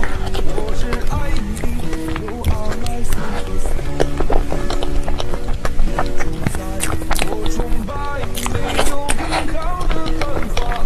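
Background music: a song with melodic vocals and a steady accompaniment.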